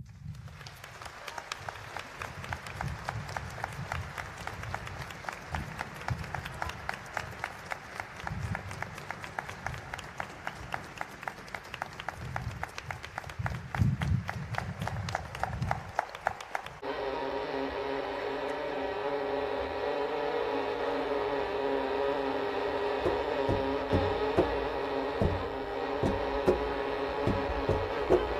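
Audience clapping, a dense patter of claps, which cuts off suddenly about two-thirds of the way through. A string orchestra then plays steady sustained chords.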